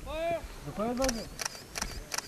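A man's voice speaks briefly, then comes a run of five or six sharp clicks in the second half, with faint short high-pitched beeps between them.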